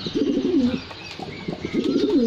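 Domestic pigeons of the Spike Jack (Zakh) breed cooing: a low rolling coo in the first second and another starting about a second and a half in.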